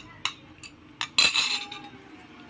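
A metal spoon clinking and scraping against a small glass bowl as salt is knocked out of it: a couple of light clinks, then a louder brief scrape a little over a second in.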